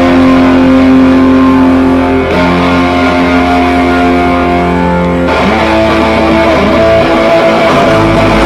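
A live rock band's electric guitar holding long, loud chords that change about every three seconds, over a low droning bass note that drops out about a second before the end.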